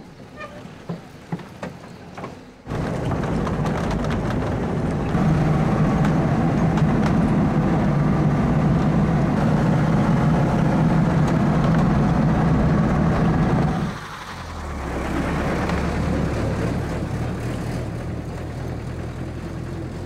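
A few light knocks, then the sound of a truck's engine comes in suddenly, running steadily and loudly as heard from the open cargo bed while driving. About two-thirds of the way through it changes to a deeper engine drone with road noise.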